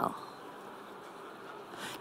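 A pause in a woman's talk: faint steady room hum and hiss, with the tail of her last word at the very start.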